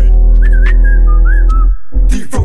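Whistled melody hook of a bass-boosted UK drill beat: a short high tune with little upward glides over loud, sustained 808 bass. The beat drops out for a moment near the end.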